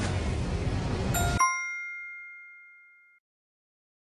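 Countdown-timer sound effect: a steady rushing hiss cuts off suddenly about a second and a half in. A bright bell-like ding sounds as time runs out and rings away over about two seconds.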